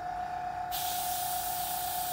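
Gravity-feed Procon Boy airbrush spraying thinned paint: a steady hiss of air and paint that starts a little under a second in.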